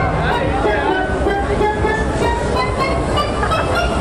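Loud fairground ride music over the steady low rumble of a Huss Break Dance ride running through a spin.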